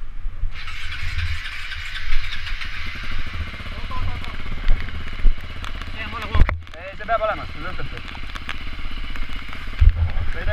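KTM supermoto motorcycle engine idling, a steady low running sound, with one sharp knock about six seconds in.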